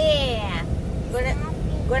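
Steady low rumble of a car's engine and road noise heard inside the cabin. A child's high voice calls out once at the start, with a short call about a second in.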